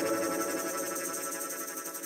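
The last chord of a small rock band's song ringing out: electric guitar and cymbals decaying steadily and fading away.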